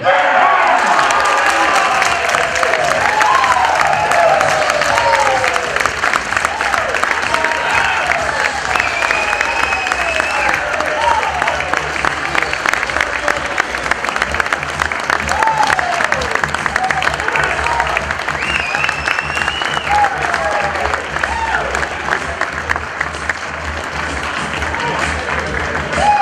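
An audience applauding and cheering an award winner, with dense clapping throughout and shouts and whistles rising over it. The applause eases a little in the second half.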